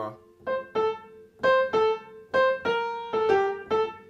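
Upright piano: a short right-hand phrase of about eight single notes, each struck and left to ring, played at a moderate, even pace in the middle of the keyboard.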